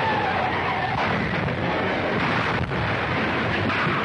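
Film sound effect of a car crashing down a rocky hillside: a continuous loud, rumbling crash with a brief dip in level past the middle.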